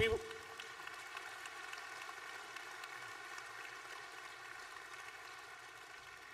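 Audience applause, an even patter of many hands clapping that eases off slightly toward the end.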